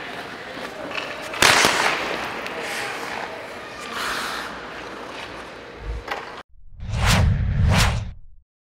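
A hockey puck is shot hard, with a single sharp, loud crack about a second and a half in, followed by open rink noise. The sound cuts off, and near the end a title sting plays two whooshes over a deep rumble.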